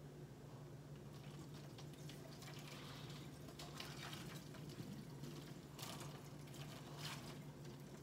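Boiling water poured from a pot onto empty plastic bottles in a stainless steel sink: a faint steady trickle with a few brief sharper splashes.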